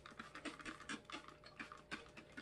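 A hand trigger spray bottle spritzing freshly poured melt-and-pour soap in quick, faint, short strokes, several a second, to pop the bubbles on its surface.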